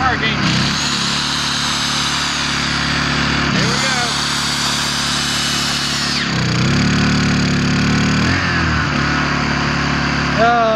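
Corded electric drill boring into the trailer deck in two runs of about three seconds each with a high whine, over the steady hum of a small portable inverter generator that powers it. The drill is short on power even when plugged straight into the generator.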